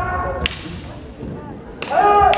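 One sharp crack about half a second in, typical of a bamboo practice naginata striking a fencer's armour, after the tail of a competitor's shout.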